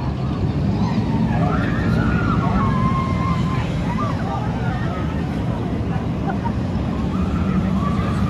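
Vekoma SLC suspended looping roller coaster train running through its track elements: a steady low rumble, with riders' yells rising and falling over it.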